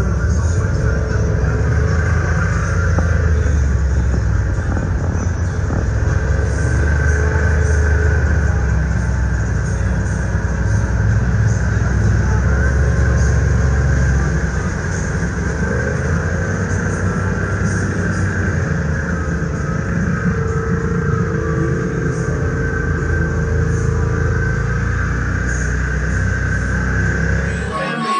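Side-by-side UTV engine running steadily under way, a dense low rumble, with background music laid over it.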